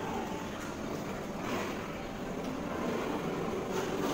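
Steady rolling noise of ride-on swing cars' small plastic wheels running across a hard play floor, heard in a large indoor room.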